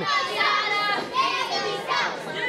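Several children's high-pitched voices shouting and calling out over one another from a crowd.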